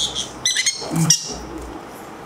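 Green-cheeked conure chicks (pineapple colour) giving short, high, squeaky begging calls while being hand-fed from a syringe, in three quick bursts within the first second or so.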